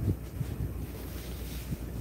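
Soft low bumps and rustles from a phone being handled and knocked at close range, over a steady low hum.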